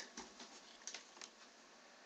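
Near silence: faint room tone with a few scattered soft clicks.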